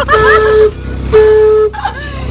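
Two blasts of a horn on one steady pitch, each about half a second, the first just after the start and the second about a second in: a train-horn warning at a railroad crossing.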